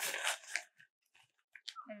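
Backpack fabric rustling and crinkling as the pack's top lid and hydration tube are handled, stopping about two-thirds of a second in; a spoken word follows near the end.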